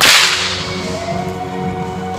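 A single sharp crack of a 6-foot bullwhip right at the start, its echo in the large hall dying away over about half a second, with music playing underneath.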